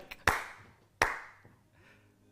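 Two single hand claps, about three-quarters of a second apart, each followed by a short fading room echo.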